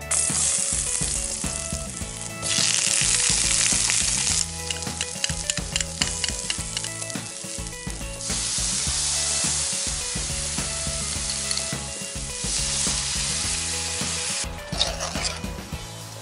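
Garlic and sliced onions sizzling in hot oil in a stainless steel wok, with a utensil stirring and clicking against the pan. The sizzle swells louder in stretches and dies away near the end.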